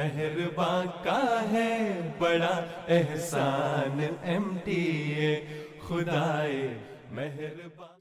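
A voice chanting a melody in long held notes that bend up and down in pitch.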